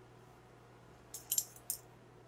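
A few light, high clinks, starting a little over a second in, as a teaspoon of sugar is tipped into a glass blender jar.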